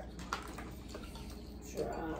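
Wet, messy eating sounds of hands pulling apart boiled crab and shrimp, with a couple of short sharp clicks in the first half second from shell being handled. A brief voice comes in near the end.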